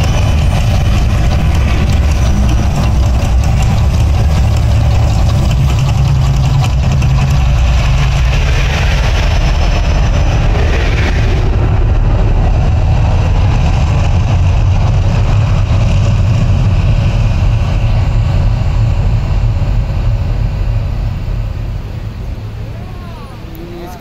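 Mirage Volcano eruption show: a loud, deep, steady rumble, with a hiss of gas fire jets through the first half. It dies away over the last few seconds as the eruption ends.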